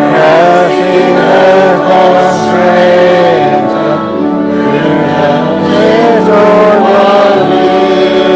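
A congregation singing a hymn together with sustained instrumental accompaniment, the melody moving from note to note over held chords.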